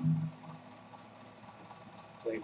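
Acoustic guitar's last strummed chord ringing out and dying away within about half a second, leaving a faint trace. Then quiet room tone.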